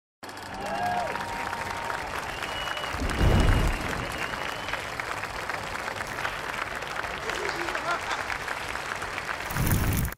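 A crowd applauding, with a few faint held tones over the clapping and a low boom about three seconds in.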